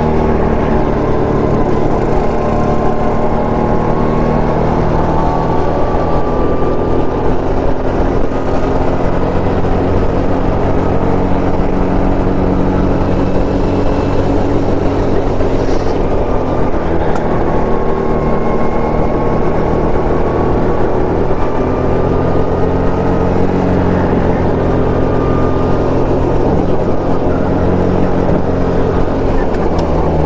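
Go-kart engine running hard, heard close up from the driver's seat. Its pitch rises and falls slowly as the throttle is worked through the corners.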